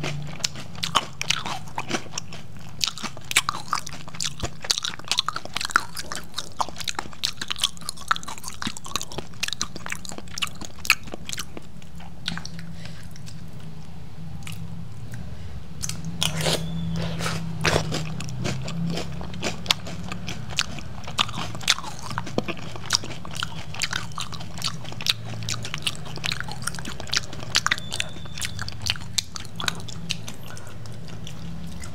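Close-miked chewing of crunchy chocolate cereal balls soaked in milk: a dense run of small crunches and wet clicks, thinning for a few seconds in the middle and picking up again after.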